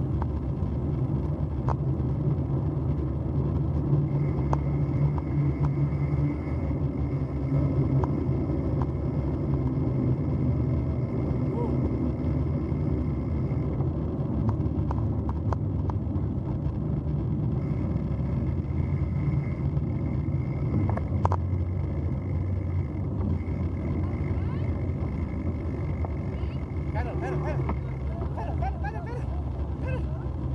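Steady rumble of bicycle tyres rolling down a dirt road, mixed with wind noise on a bike-mounted microphone, with small scattered ticks and rattles.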